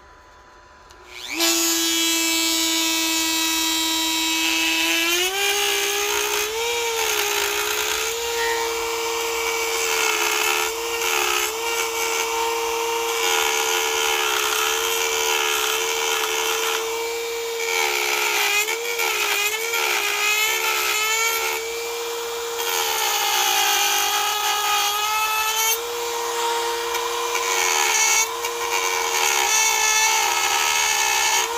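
Dremel 4300 rotary tool with a Manpa cutter starting up about a second in with a rising whine, then running steadily and stepping up in speed a few seconds later. Its pitch dips briefly now and then as the cutter bites into the Arbutus wood.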